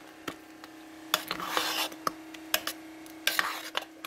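A spoon stirring thick, creamy steel-cut oat porridge in a slow-cooker crock, in several short, irregular scraping strokes. A faint steady hum runs underneath.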